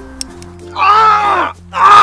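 Background music with steady low notes, over which a young man cries out twice in pain, a long yell about a second in and a shorter one near the end, after burning his finger on the fire he is lighting. A short click sounds just after the start.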